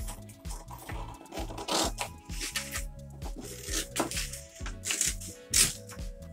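Scissors cutting along a fold in a sheet of printer paper: several short crisp snips about a second apart. Background music with steady low notes plays throughout.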